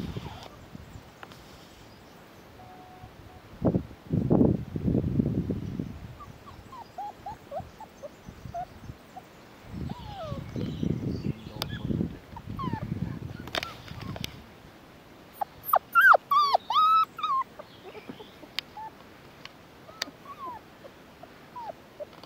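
Border Collie puppies whimpering and squeaking in play, with a quick run of louder yelps about two-thirds of the way in. Bouts of low rumbling noise come and go between the calls.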